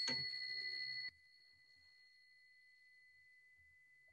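A small bell ringing with a high, steady tone, struck again right at the start. The ring cuts off abruptly about a second in, leaving only a faint trace of the tone.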